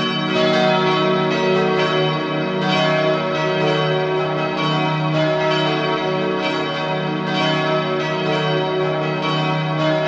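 Bells ringing in a continuous peal, strike after strike overlapping.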